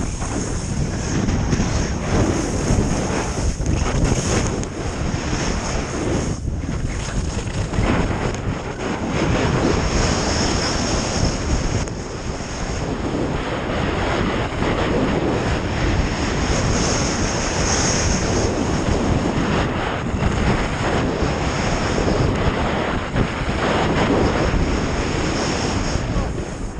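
Wind buffeting the microphone of an action camera on a skier moving fast downhill, with the hiss of skis sliding over packed snow. The noise stays steady and loud throughout.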